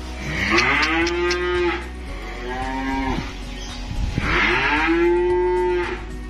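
Cattle mooing: three calls, each rising in pitch as it starts, the first and last about two seconds long and the middle one shorter.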